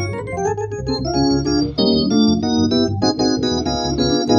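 Software Hammond-style organ played from a keyboard. A quick run of short chords gives way to fuller held chords that change about every half second.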